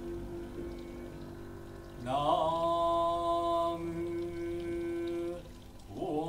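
A chanted vocal note that slides up into pitch about two seconds in and is held steady for some three seconds, over a soft sustained low tone from the ensemble.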